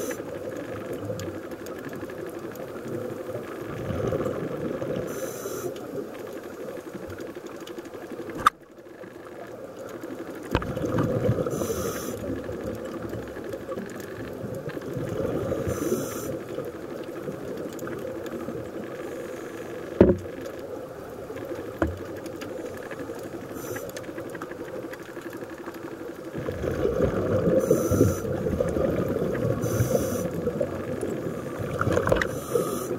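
Scuba diver's breathing through a regulator heard underwater, with exhaled bubbles coming in rumbling, bubbly bursts every several seconds over a steady underwater hiss. A few sharp clicks break in, the first about eight seconds in.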